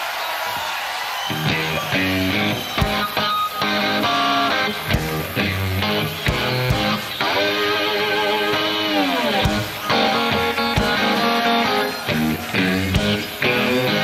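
Live blues band music: an electric guitar plays a slow blues intro with notes that slide and bend. Low bass notes join after about a second and a half.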